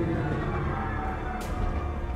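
Cinematic sound effects of a spacecraft entering a storm: a steady low rumble with a few falling tones, and a sharp crack about one and a half seconds in.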